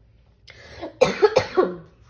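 A woman coughing, a short loud burst about a second in, from a cold with a sore throat.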